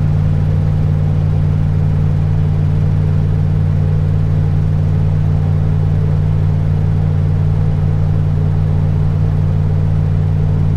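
Steady low drone of a 1998 Damon Intruder motorhome cruising at highway speed, heard inside the cab: engine and road noise together, even throughout, from an engine the owner says runs better than it ever has.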